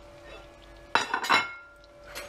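A ceramic plate clinking against cookware: a few quick clinks about a second in, with a brief ring, as toasted almonds are tipped off it into a frying pan of melted butter.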